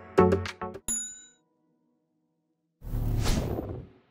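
The last beats of background music, then a single bell-like ding about a second in, of the kind laid under a subscribe-button animation, ringing briefly before silence. Near the end comes a noisy swell that lasts about a second and fades out.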